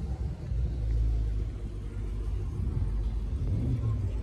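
Car engine running at low revs, a steady deep rumble that swells about half a second in, consistent with the red Dodge Challenger muscle car sitting in the lot.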